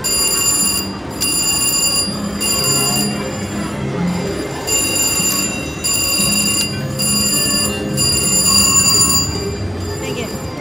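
A VGT slot machine's electronic win bell ringing in repeated bursts of about a second, with short gaps, as won credits count up onto the meter. A busy casino hum runs underneath.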